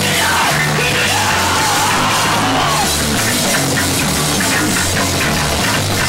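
Punk rock band playing loud, with guitar, bass and drums, and a yelled vocal in the first half.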